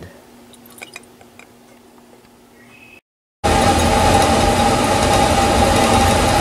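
A few faint clinks of glassware. Then, after a cut, a magnetic stirrer plate runs loud and steady, a whirring hum with one clear mid-pitched tone, as it stirs the flask to dissolve the benzophenone.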